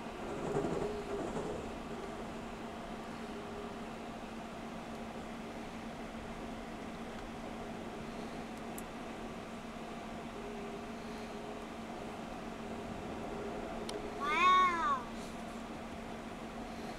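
Steady hum inside a moving car, with a brief louder noise about a second in. Near the end a cat meows once, a single call that rises and falls in pitch.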